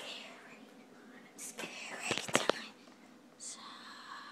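Whispering, broken a little past halfway by a quick cluster of sharp clicks. A steady higher-pitched tone comes in near the end.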